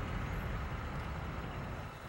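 Low, steady rumble of a van's engine idling, slowly getting quieter.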